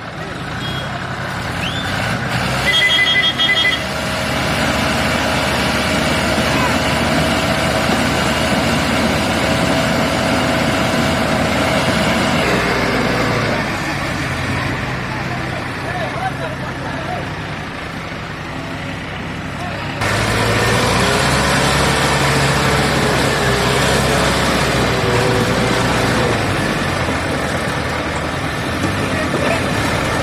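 Diesel tractor engine running under load as the tractor works through deep, sticky mud, with a short burst of rapid high beeping about three seconds in.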